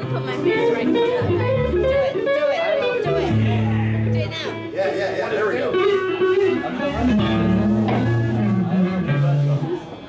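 Live rock band playing: electric guitar lead lines with bending notes over long held bass guitar notes. The music drops away near the end.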